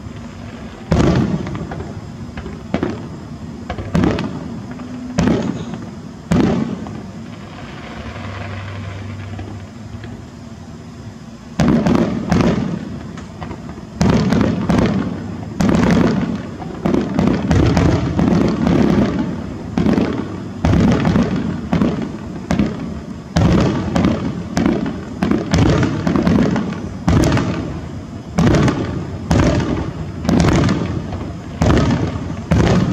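Aerial fireworks shells bursting: a handful of single bangs spaced a second or two apart, a short lull, then from about halfway a rapid run of bangs, several a second.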